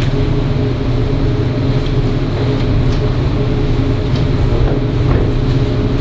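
Steady low hum and rumble of the meeting room's background noise, with a few faint soft ticks.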